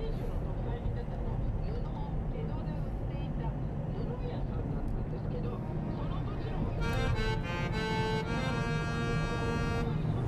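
Background music over the steady low rumble of a car driving, heard from inside the cabin; the music fills out with held chords about seven seconds in.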